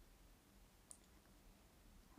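Near silence, with one faint short click just under a second in.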